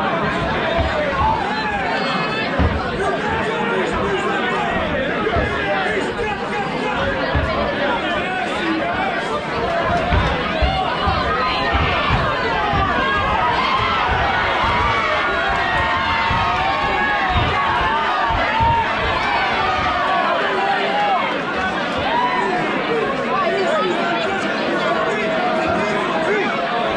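Boxing crowd shouting and chattering, many voices overlapping, with dull low thuds that stop about twenty seconds in.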